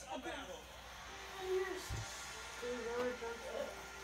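Faint voices, speech-like with a few drawn-out tones, with a single soft knock about two seconds in.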